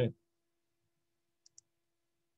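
Two faint computer-mouse clicks in quick succession about a second and a half in, against near silence, after the tail of a spoken word.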